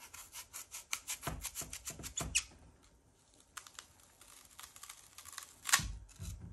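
Kitchen knife cutting into a crisp apple: a quick run of short crunchy scraping strokes for the first two seconds or so, a few fainter ones about four seconds in, and a louder knock near the end.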